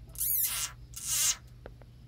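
Frog crying out in distress while held in a garter snake's jaws: two high-pitched cries, the first a fast warbling squeal, the second a harsher, hissing scream about a second in.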